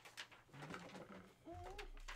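Faint paper handling, a few taps and rustles as a printed sheet is moved. Near the end comes a short hummed note from a man's voice that rises and then wavers.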